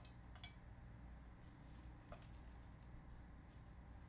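Near silence: room tone with a faint steady low hum and a couple of faint clicks from handling trading cards.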